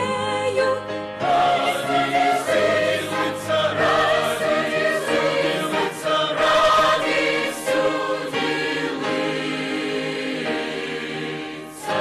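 A large mixed choir singing a Christmas choral song in sustained chords, with a short break near the end before the next phrase begins.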